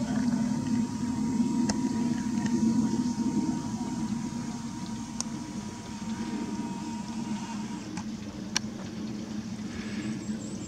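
Steady low engine rumble, easing slightly after the first few seconds, with a faint high steady tone that stops near the end and a few faint clicks.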